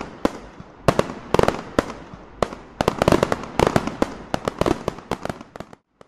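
Fireworks going off: a rapid, irregular run of sharp bangs and crackling pops, some louder than others. The run stops abruptly just before the end.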